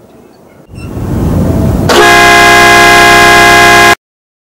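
A boat's air horn sounds one very loud, steady blast of about two seconds, several tones together, which cuts off abruptly. Before it, a low rumble swells up over about a second.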